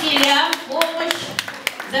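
Scattered hand claps, a few separate claps a second, over overlapping children's voices.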